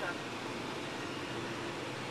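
Steady cabin noise inside a Mitsubishi Outlander Sport cruising at highway speed, with a faint low hum running under it.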